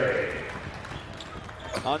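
Basketball arena crowd noise after a three-point shot, fading over the first second to a low murmur.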